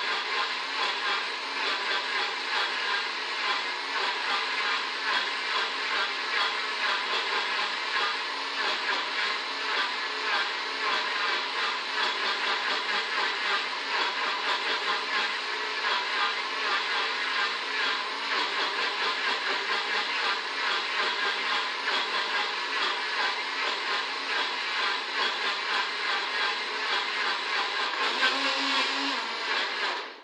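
Countertop blender running steadily, blending a liquid papaya and milk shake. It is switched off at its knob at the very end and cuts out abruptly.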